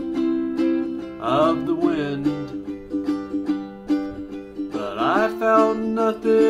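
Ukulele strummed in a steady rhythm, ringing chords in an instrumental passage.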